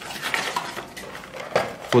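Small hard objects handled on a desk: a string of light clicks and clinks, with a sharper knock about one and a half seconds in.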